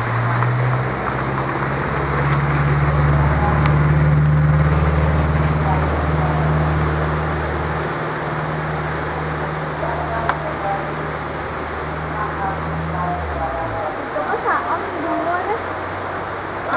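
A nearby engine running with a steady low hum, which drops in pitch and fades out about thirteen seconds in, under the chatter of people's voices.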